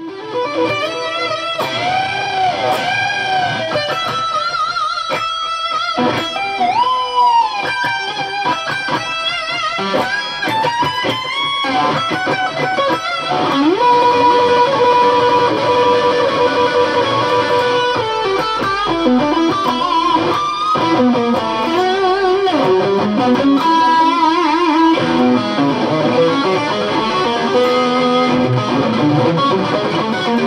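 Xotic California Classic XSC-1 Strat-style electric guitar playing a rock lead on the back (bridge) pickup, with its tone control rolled down to about five to tame the highs into a round sound that doesn't tear your head off. The lead opens with string bends and vibrato, holds long sustained notes through the middle, then moves into faster, lower runs near the end.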